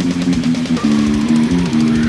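Nu-metal music: electric bass played fingerstyle along with a heavy distorted guitar riff and drums, the notes changing quickly and then held longer about a second in.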